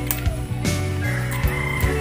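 A farmyard fowl's call held for a little over a second, starting just under a second in, over steady background music.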